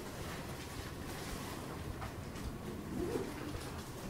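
Low, steady room rumble with a brief faint hum about three seconds in.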